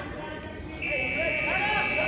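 An electronic buzzer sounds a steady, high, unbroken tone, starting about a second in and holding.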